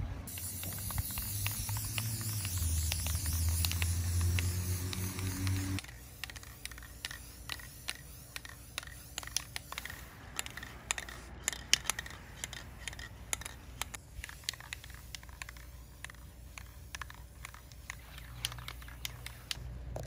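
Aerosol spray paint can hissing as a light coat of blue paint is sprayed on. The spray is loudest for about the first six seconds, over a low hum that cuts off suddenly. After that it goes on more faintly with scattered clicks.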